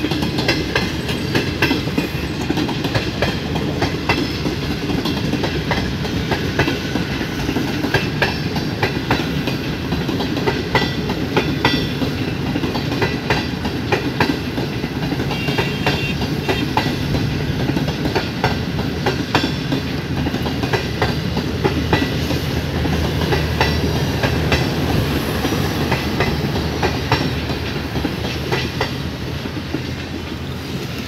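Pakistan Railways passenger coaches rolling past at speed, their wheels clattering rapidly over the rail joints with a steady rumble underneath.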